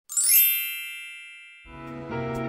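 Bright sparkling chime sound effect: a quick upward cascade of many high ringing tones that ring out and slowly fade. A low sustained musical chord comes in near the end.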